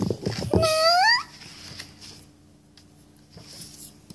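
A child's voice saying a drawn-out, high, rising "No," in a squeaky puppet voice, followed by quiet room tone.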